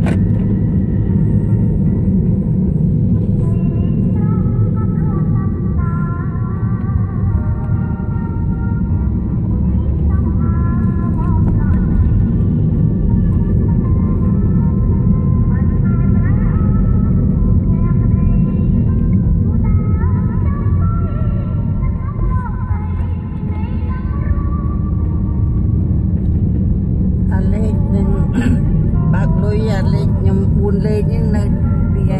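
Steady low road and engine rumble inside a moving car, with music and a voice over it.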